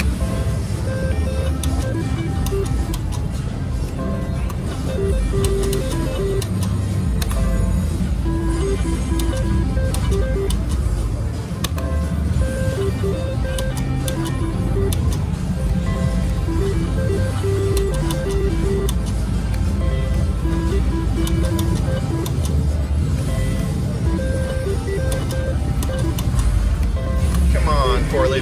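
Casino slot floor din: many slot machines' short electronic beeps and jingles overlapping with background chatter and a low rumble, with frequent sharp clicks throughout. The three-reel slot machine in front is being spun again and again.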